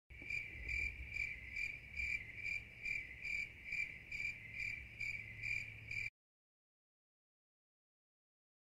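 A cricket chirping in an even rhythm, a little over two high-pitched chirps a second. It cuts off suddenly about six seconds in.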